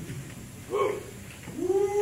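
A person's voice: a short vocal sound, then a long drawn-out exclamation that rises, holds and falls in pitch near the end.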